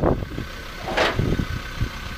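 Pickup truck engine idling steadily, with one short sharp noise about a second in.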